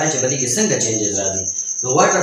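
A man lecturing, with a short pause near the end, over a steady high-pitched pulsing trill.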